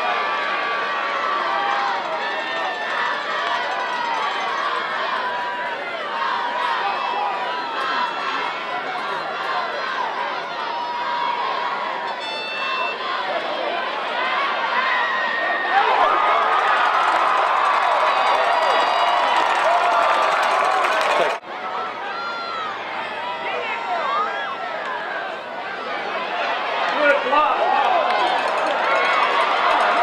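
Football stadium crowd: many voices talking and shouting in the stands at once, growing louder about halfway through.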